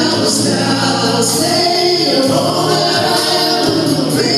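Male vocal group singing in harmony with band accompaniment, amplified through a PA, with sustained held notes.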